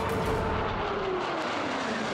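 Su-25 attack jets flying past: a steady jet rush with a whine that falls steadily in pitch as they go by.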